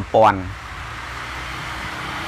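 A short spoken syllable, then a steady, even hiss of background noise with no distinct events.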